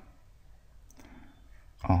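A single faint click about a second in, from a stylus tapping a drawing tablet while a diagram is sketched, followed near the end by a short spoken syllable.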